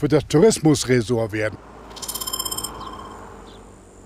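A man speaks for about a second and a half, then a faint outdoor hush takes over. About two seconds in, a brief run of rapid high-pitched ticks lasts roughly half a second.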